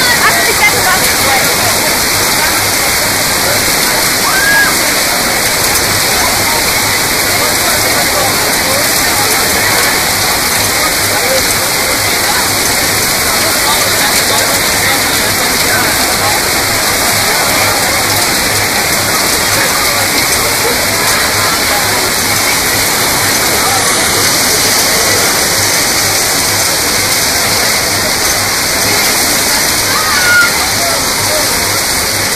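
Heavy, wind-driven storm rain pouring down steadily, a loud, even hiss with no break.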